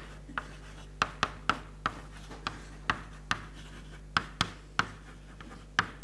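Chalk writing on a chalkboard: short, sharp taps and scrapes as each letter is struck, about two a second at an uneven pace.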